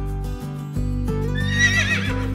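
A horse whinnies once near the end, a short quavering call, over steady background music.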